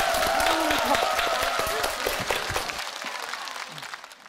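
Audience applauding at the end of a song, the clapping growing quieter over the last second or two.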